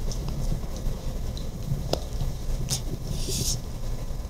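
Room hum in a conference hall with a few light knocks and a brief rustle, handling noise as the floor passes to the next questioner.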